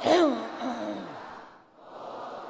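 A voice chanting one long, drawn-out syllable that rises and then falls in pitch, loudest near the start, over a steady background hum of the hall.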